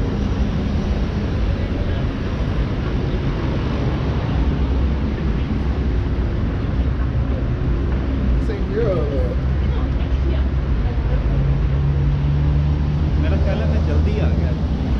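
City road traffic: a steady rumble of vehicles running past, with a heavier engine's hum building from about four seconds in and strongest near the end. Bits of nearby voices come through.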